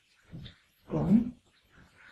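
Two short vocal sounds in a pause between phrases, the second louder, with a pitch that bends upward before it breaks off.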